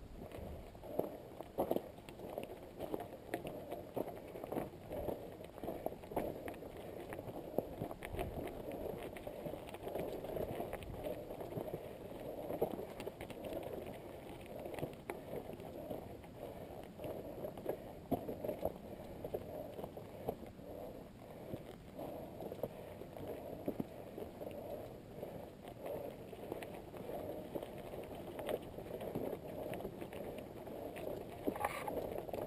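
Mountain bike rolling along a gravel double-track: a steady rumble of tyres on loose gravel, with frequent short clicks and knocks from stones and the rattling bike.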